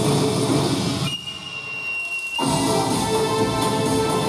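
Loud recorded dance-team music playing over a hall sound system. About a second in, the music breaks off and leaves a single high held tone, then the full music comes back in about a second later.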